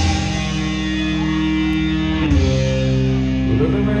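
Live rock band playing electric guitars and drum kit, the guitars holding chords that change about two seconds in. A voice starts singing right at the end.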